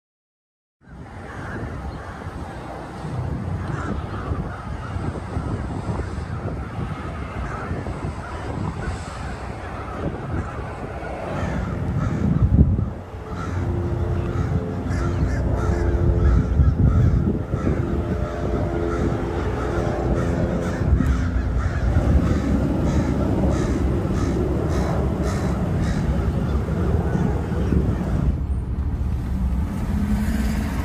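Crows cawing repeatedly from a treetop flock over a steady low outdoor rumble. The sound starts about a second in.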